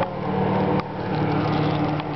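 Airboat engine idling steadily while the boat sits stopped, a low even hum, with a single short click a little under a second in.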